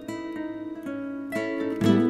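Background music: an acoustic guitar picking a run of plucked notes.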